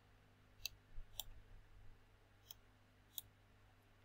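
Faint computer mouse button clicks, four sharp clicks spread unevenly, with a soft low rumble around the first two.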